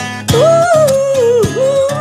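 A song: a singer holding long, slow melodic notes over acoustic guitar accompaniment, the voice pausing briefly at the start before rising into the next line.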